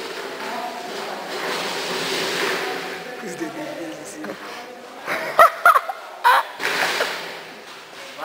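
Taekwondo sparring: a quick cluster of sharp smacks, like kicks landing on a padded chest protector, with short high yelps between about five and six and a half seconds in. The first half holds a low hall murmur.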